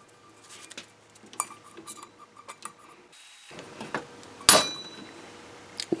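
Light metal clinks and handling of a thin stainless steel cup in a bench-mounted hand punch, then one sharp metallic snap about four and a half seconds in as the punch goes through the steel.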